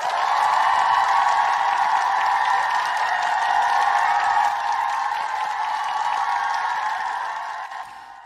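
Recorded crowd applause with some cheering, played as a sound effect to welcome a guest; it runs steadily and fades out near the end.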